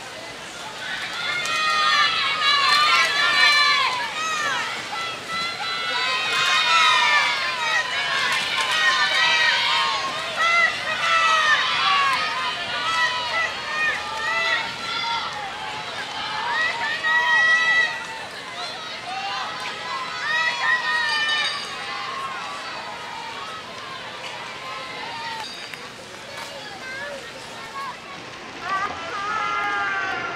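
Raised voices shouting encouragement to racing rowing crews. The shouts run thick and loud for about the first eighteen seconds, thin out after that, and come again in a short burst near the end.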